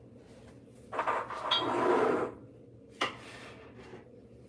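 Kitchen containers being handled on a counter: a short rustling clatter for about a second, then a single sharp knock a second later, like a plastic funnel and bottle being set down.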